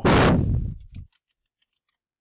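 A short, loud vocal sound from the speaker fills the first second. It is followed by faint, scattered computer-keyboard key taps as a line of code is typed.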